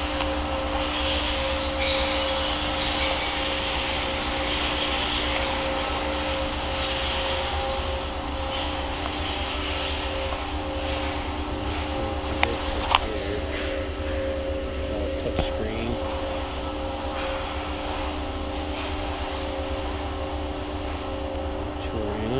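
Steady electric whir with a low rumble and a hum of several steady tones, from the autogyro's electrical system and avionics switched on with the engine not running. Two sharp clicks come about twelve and thirteen seconds in.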